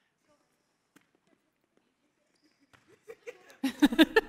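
Near silence for about three seconds, with one faint tap about a second in. Near the end come a few short slaps of volleyballs being passed and set, and then players giggling.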